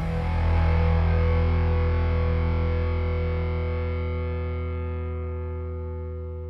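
Outro music: a single distorted electric guitar chord held and ringing out, slowly fading.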